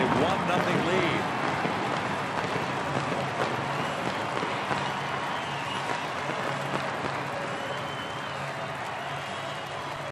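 Baseball stadium crowd cheering a home-team home run, the noise slowly dying down.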